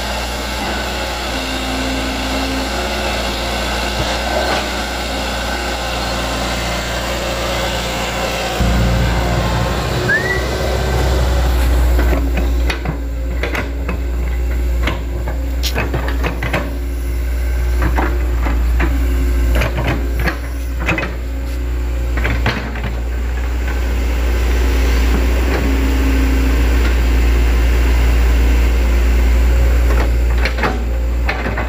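Hitachi hydraulic crawler excavator's diesel engine running steadily, growing louder and heavier under load about a third of the way through. From then on, repeated clanks and knocks come from the steel tracks and bucket as the machine travels and pushes soil.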